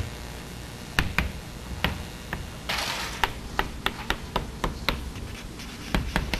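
Chalk on a blackboard as words are written: sharp irregular taps, sparse at first and then coming two or three a second, with a short scrape about three seconds in.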